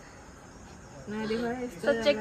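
Crickets chirping in the background at night. About halfway through, a girl's voice comes in, first on a held, steady pitch.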